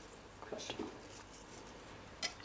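Quiet kitchen room tone with a few faint soft clicks about half a second in, from hands handling food and small utensils at the counter.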